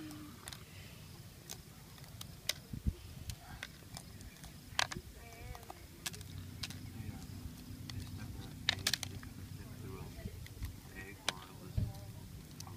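Scattered small clicks and crackles of a fire-roasted eggshell being picked off by hand, with a faint low hum coming in about halfway through.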